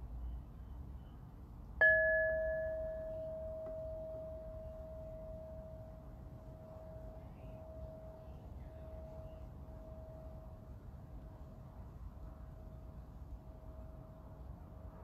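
Hand-held singing bowl struck once with a mallet about two seconds in, ringing one steady low tone that fades slowly and wavers in a regular pulse as it rings on. A higher overtone rings briefly after the strike and dies away within about a second.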